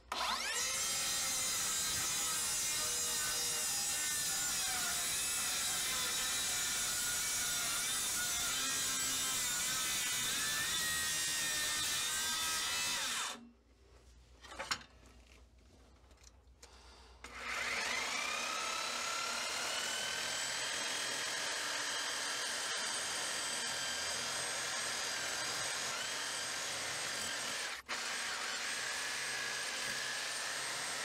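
Circular saw starting and cutting along an old oil-soaked wooden bulkhead for about thirteen seconds, then stopping. After a few quiet seconds and a single click, a reciprocating saw starts up with a rising whine and cuts steadily.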